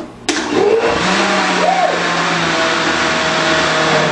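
Countertop blender switched on suddenly just after the start and running steadily at speed, blending a thick shake of ice cream, milk and frozen strawberries.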